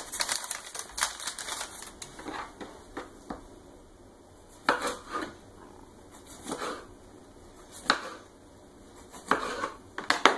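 A kitchen knife slicing through a rolled dough log, its blade clicking and knocking on a stone countertop: a quick run of clicks at first, then single knocks every second or so.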